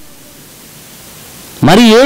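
A pause in a man's sermon into a microphone: only a steady, faint hiss until his voice comes back in near the end.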